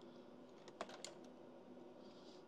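Near silence with a faint steady hum, broken by a few light clicks about a second in from a test lead's clip being handled and fitted to a bench instrument's terminal.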